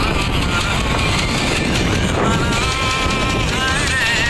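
A song playing, its wavering sung melody clearest in the second half, over a steady rumble of wind and a moving vehicle.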